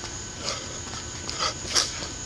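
A boxer's short, sharp exhalations through the mouth as he throws punches while shadowboxing, a few quick hissing breaths with the loudest near the end.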